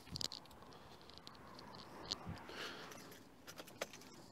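Faint, scattered clicks and rustles of a person moving round to the car and getting into the driver's seat, with a few small ticks near the end; no engine is running.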